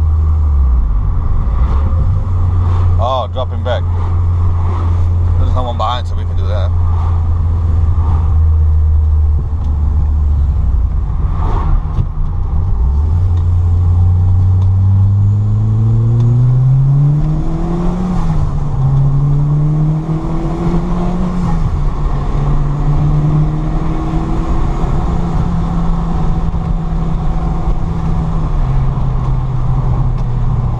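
Peugeot 205 Dimma's turbocharged engine heard from inside the cabin. It cruises steadily at first, then accelerates about halfway, rising in pitch and dropping back twice at gear changes. It then holds steady and eases off near the end.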